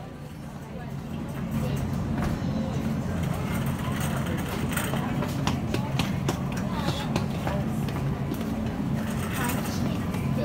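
Busy supermarket background: indistinct voices over a steady low rumble, with scattered clicks and rattles.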